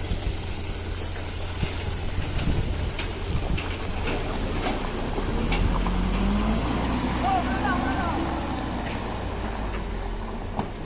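Diesel engine of a Mitsubishi Canter dump truck, heavily loaded with stones, labouring as it drives through shallow river water and mud; the engine note climbs about halfway through and then holds. Scattered sharp clicks sound over the engine.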